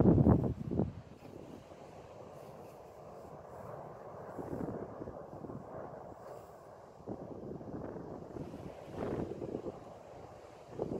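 Wind buffeting the microphone over the low rumble and water churn of a glacier's ice front breaking and collapsing into a lake. It is loudest in the first second, then settles to a steady, quieter rumble that swells a few times.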